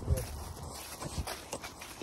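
Faint, scattered footsteps and scuffs on wet, muddy ground.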